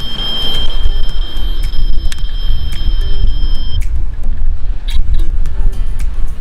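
Small built-in speaker of a die-cast toy Dodge Charger playing its sound effects, with a steady high-pitched tone that stops about four seconds in and a few sharp clicks, over a strong low rumble.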